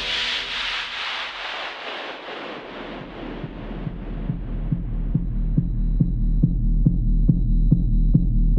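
Hard-techno breakdown. A wash of noise fades and sinks in pitch, then a low electronic pulse repeats about three times a second and grows steadily louder. A thin, steady high tone enters about five seconds in.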